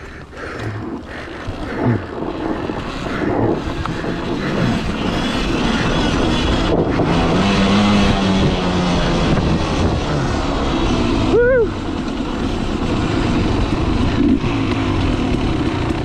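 A Beta Xtrainer 300's single-cylinder two-stroke engine runs under way on dirt, building speed and loudness over the first several seconds. About two-thirds of the way through there is a brief dip and a quick rise-and-fall in engine pitch.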